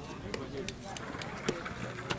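A few sharp taps about a third of a second apart, the loudest about one and a half seconds in, over faint distant voices.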